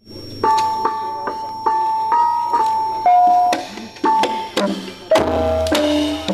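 Javanese gamelan playing a ladrang. Struck bronze instruments play a melody one ringing note at a time, about two or three notes a second. About five seconds in, the louder, lower full ensemble comes in.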